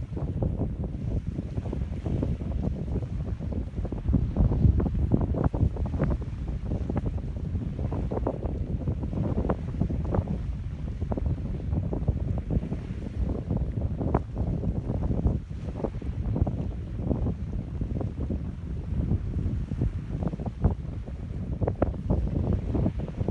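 Wind buffeting the microphone: a rough low rumble that swells and drops in irregular gusts.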